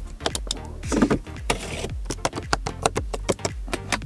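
A quick run of many sharp plastic clicks from a Proton X70's cabin controls being worked: buttons, a stalk-mounted trip knob and a hinged armrest lid, over a low steady hum.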